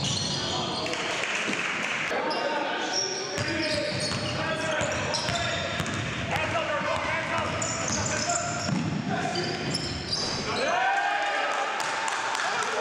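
Basketball game play on a hardwood gym floor: a ball being dribbled, short high squeaks, and players' voices calling out indistinctly.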